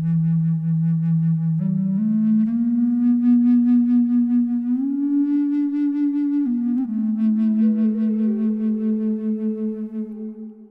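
A slow melody on a low sub bass flute, long breathy notes held for a second or more and stepping upward, then dropping back, with a higher midrange flute line joining near the end, both in the key of E.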